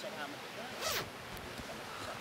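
A jacket zip pulled once, a short quick zip about a second in, over faint background hiss.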